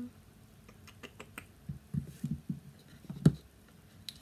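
Light clicks and taps from handling a hard-cased eyeshadow palette, then a few soft thuds and one louder knock a little after three seconds in.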